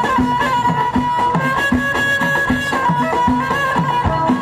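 Live Moroccan Amazigh folk music: frame drums beating a steady rhythm under a sliding violin melody, with a lute.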